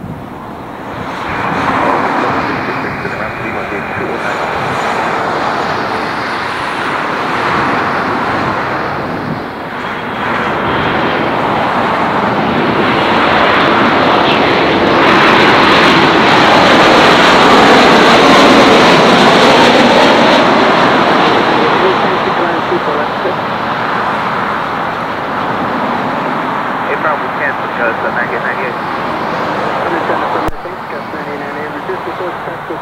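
Jet engines of a twin-engine airliner, an Air Canada Boeing 737 MAX 8, on final approach with gear down, passing close by. The jet noise builds over the first couple of seconds, is loudest about halfway through with a sweeping, wavering sound as the jet goes past, then eases off.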